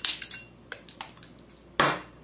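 Light clicks and taps of a plastic measuring spoon and flavouring bottle being handled over a mixing bowl, with one louder clatter near the end.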